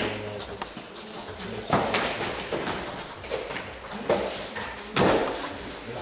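Sharp thuds of blows and bodies hitting the mat in a kudo sparring bout: four impacts, the loudest about five seconds in, as the fighters go down to the mat.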